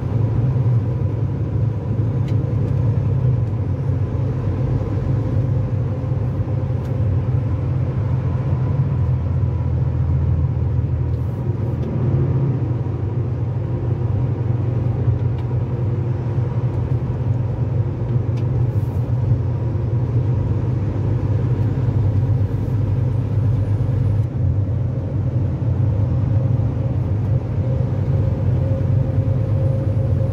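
Engine and road noise heard from inside a moving vehicle's cab at freeway speed: a steady low drone with a faint steady hum above it.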